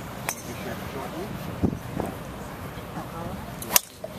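A golf driver striking a ball off the tee: one sharp, loud crack near the end, over the chatter of onlookers.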